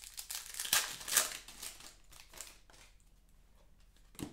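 A 2021 Panini Prizm Draft Picks card pack's wrapper crinkling and tearing as it is ripped open by hand. The sound is loudest in the first second or so and dies away after about two seconds.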